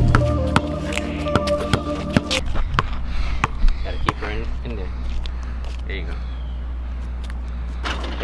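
Background music that stops about two seconds in. After it, a basketball bounces irregularly on a concrete driveway, with faint children's voices.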